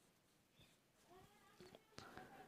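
Near silence: room tone, with a few faint, short pitched calls in the background in the second half.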